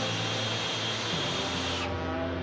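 Steam whistle on the Liberty ship SS Jeremiah O'Brien blowing: a loud hiss of steam with a bright high edge that cuts off suddenly near the end.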